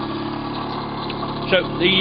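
Bedini-type pulse motor running: a steady hum made of several even tones as its magnet rotor spins and trips the reed switches that pulse the coils.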